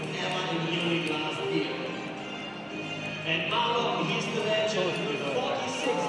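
Table tennis rally: the celluloid ball clicking off the paddles and the table several times, under music and voices.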